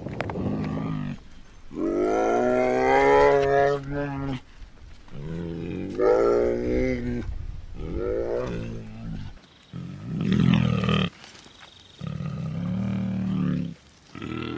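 Bear vocalising: a series of about six drawn-out, pitched calls with short pauses between them. The longest call lasts about two and a half seconds, starting about two seconds in.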